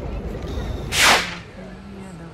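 A single sharp swoosh about a second in, sweeping downward in pitch and lasting under half a second: a video-editing transition effect. It stands over a steady outdoor background rumble, which drops to a quieter bed just after the swoosh.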